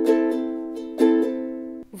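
A ukulele strummed in a down, down, up, up-down, up pattern, with one chord ringing through a few sharp strums and then damped to a sudden stop near the end.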